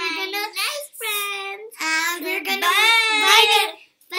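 Young girls singing and laughing together in high voices, in three phrases, the last about two seconds long and wavering, cut off just before the end.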